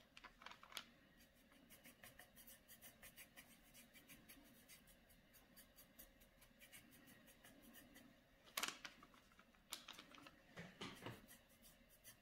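Faint, rapid scratching of a paintbrush's bristles stroking acrylic paint across a canvas board in short cross-hatch strokes, with a few louder strokes in the last third.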